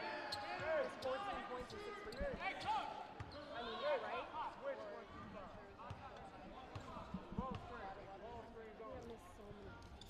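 Basketball bounced on a hardwood court floor by a player at the free-throw line, part of his routine before the shot, with faint voices in the arena behind.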